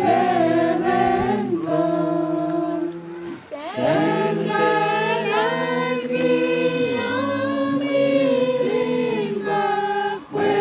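A small group of voices singing unaccompanied in harmony, holding long notes, with a brief pause about three and a half seconds in.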